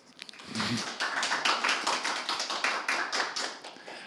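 Applause from a small audience in a room, a quick run of many irregular claps that starts about half a second in and dies away near the end.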